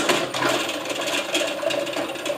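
Inverter-driven pillar drill boring into steel at its lowest speed, about 270 rpm: a dense, uneven scraping of the bit cutting metal, with many small clicks over a faint steady motor tone.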